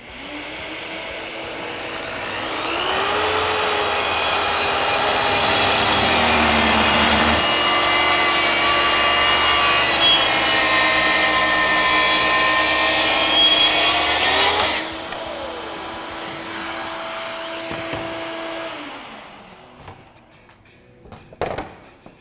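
Kreg track saw running and ripping the live edge off a rough-sawn board along its guide track. It builds up over the first few seconds and cuts steadily for about ten seconds. The loud part then ends sharply, leaving a lower hum that winds down and dies away a few seconds later.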